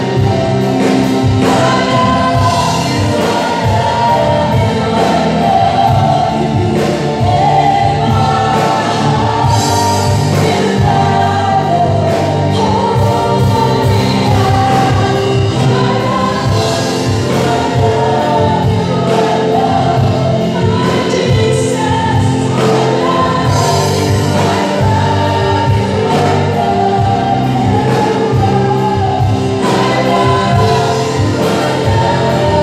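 Live church praise band playing a worship song: men's and women's voices singing together into microphones over acoustic guitar and band accompaniment, steady throughout.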